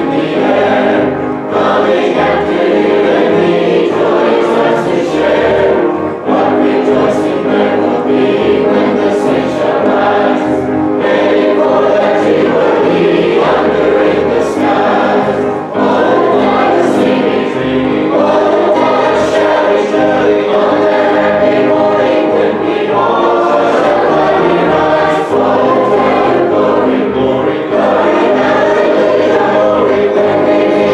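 Many voices singing a hymn together, steadily and without a break.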